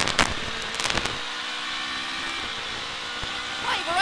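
Toyota Corolla Twin Cam rally car's twin-cam four-cylinder engine under full throttle, shifting up from second to fourth gear, heard from inside the cabin. Sharp cracks come near the start and again about a second in.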